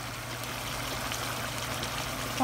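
Fish curry simmering in a pan: a steady hiss with a few faint pops, over a steady low hum.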